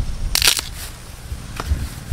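A short, loud crunch of dry plant material about half a second in, followed by a couple of soft low thumps near the end.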